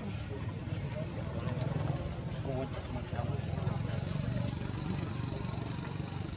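Outdoor ambience: a steady low rumble like a vehicle engine running nearby, with faint, broken distant voices over it.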